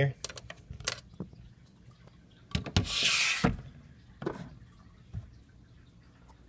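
Scattered clicks and knocks as the lid of a resin rock hide in a reptile enclosure is handled and lifted off. About three seconds in there is a brief, loud, hiss-like rush of noise.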